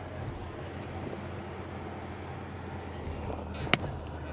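Ferrari GTC4Lusso T's twin-turbo V8 and tyres heard from inside the cabin as a steady low drone while driving at low speed, with one sharp click near the end.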